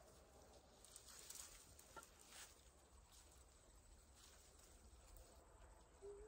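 Near silence, with faint light rustling of raspberry canes and leaves as berries are picked by hand.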